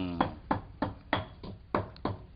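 Pestle pounding in a mortar, a sharp knock about three times a second, grinding chillies into a spice paste for asam pedas.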